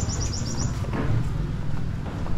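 A small bird chirps in a quick run of about eight short, high notes that stop less than a second in. Under it runs a steady low rumble, the loudest sound throughout.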